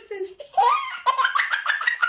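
Laughter from a woman and a baby: a short rising laugh about a quarter of the way in, then from about halfway a fast run of high-pitched laughing pulses.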